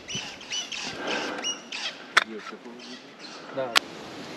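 Birds chirping in short calls, with two sharp clicks, one about two seconds in and one near the end, and brief snatches of low voices.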